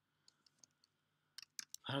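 Faint clicks of computer keyboard keystrokes: a few scattered taps, then a quick run of keystrokes about a second and a half in as a line of code is typed.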